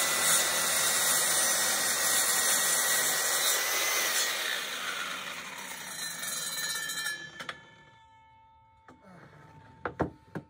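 Circular saw cutting through a wooden board, its motor whining steadily under load. About four seconds in, the cut ends and the saw winds down, dying away by about seven seconds, followed by a few light clicks.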